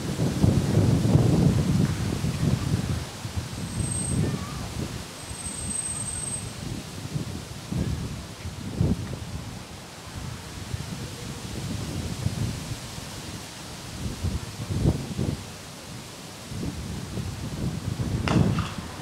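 Wind buffeting an outdoor camera microphone in gusts: an uneven low rumble that swells and fades, loudest in the first couple of seconds.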